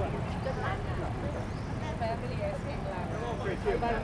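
Indistinct voices of people talking over a steady low rumble of road traffic.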